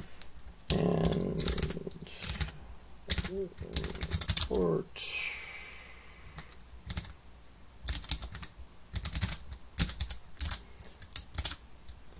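Typing on a computer keyboard: irregular runs of key presses as text and key shortcuts are entered.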